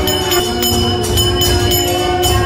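Loud rhythmic devotional music: quick, regular metallic strikes about four a second over pulsing drumming and a steady held tone.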